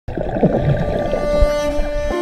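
Muffled underwater sound from a camera held under water beside a swimmer: low rumbling water noise with a few sliding tones. A sustained note of soft string music plays over it and carries on alone when the underwater sound cuts off at the end.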